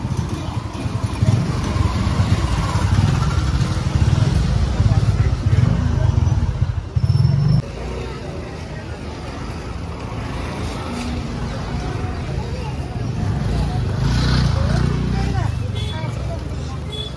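Busy market street ambience: indistinct voices and motor vehicle noise under a heavy low rumble, which is loudest in the first half and cuts off abruptly about halfway through.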